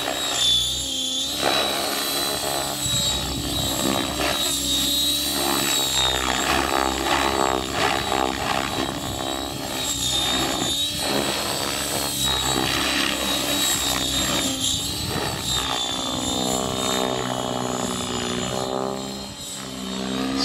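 Align T-REX 700E electric RC helicopter in flight: a steady high-pitched motor whine with rotor-blade noise whose pitch rises and falls as it manoeuvres.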